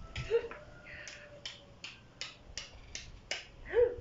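Scissors snipping repeatedly: a run of about seven crisp clicks at roughly three a second, with a short vocal sound near the start and another near the end.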